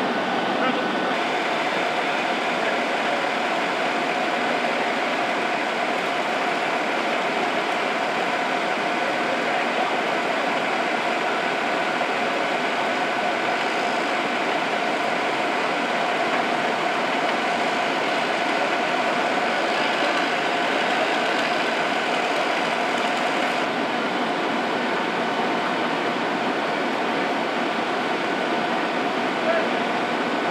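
Fire engines' diesel engines and pumps running at a steady pitch, one even noise that does not rise or fall, with indistinct voices underneath.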